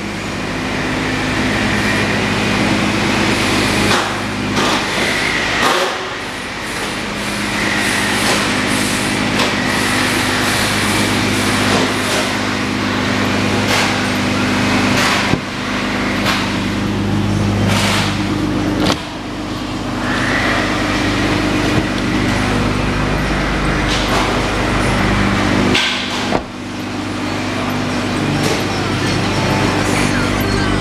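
A steady low mechanical hum, with a dozen or so sharp knocks and clunks as the SUV's doors are opened and handled.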